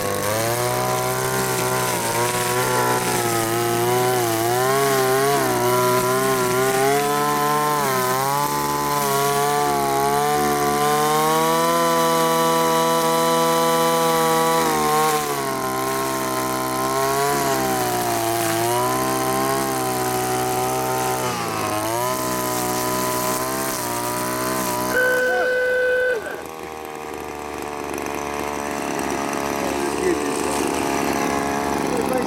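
Two-stroke gas string trimmer running, its engine speed rising and falling as the throttle is worked while cutting grass, held steady for a few seconds in the middle. Near the end the engine drops back to a lower speed.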